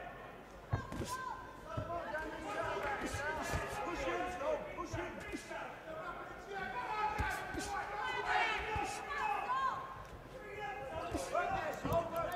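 Boxing-hall atmosphere: many voices from the crowd and corners shouting over one another, with scattered sharp thuds from the ring throughout. A commentator laughs about a second in.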